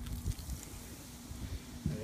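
Wind buffeting the microphone as a low, uneven rumble, under a faint steady hum.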